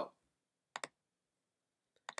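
Two quick, faint computer mouse clicks a fraction of a second apart, about three-quarters of a second in.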